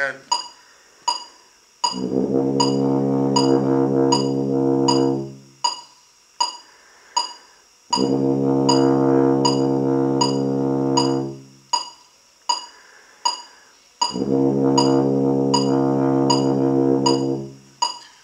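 Tuba playing three long, held low Cs (second ledger line below the bass staff, valves one and three), each about three and a half seconds with gaps between. A steady click beat of about two a second runs underneath.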